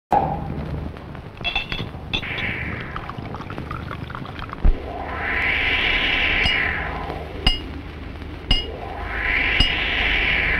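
Water washing in two slow swells, with sharp clicks that ring briefly, several of them spaced about a second apart.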